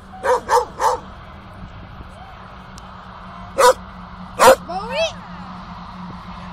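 Dog barking: three quick barks at the start, then two single barks later, the last followed by a short whine.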